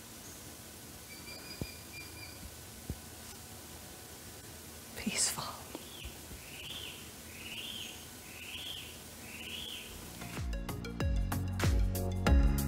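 Rainforest birds calling over a faint steady hiss: a held whistled note early on, a sharp upward sweep about five seconds in, then a run of five arching notes about one a second. Music comes in near the end.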